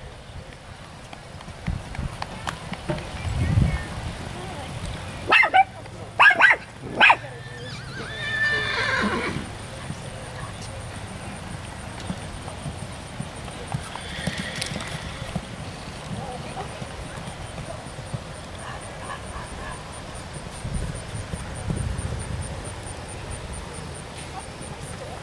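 A horse whinnies once, a falling call about eight seconds in, over the muffled hoofbeats of a horse cantering on sand footing. A cluster of short, sharp sounds comes just before the whinny.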